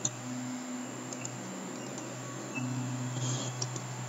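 A few faint computer mouse clicks over a low, steady background hum.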